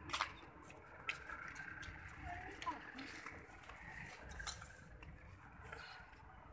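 Faint clicks and scuffs from someone walking with a handheld phone, irregular, about once a second, over a low background rumble.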